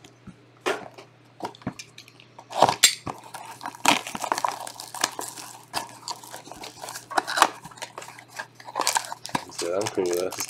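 Cellophane shrink-wrap crinkling and crackling as it is stripped from a cardboard trading-card box, then the box's cardboard flap being pulled open, with irregular sharp clicks and rustles.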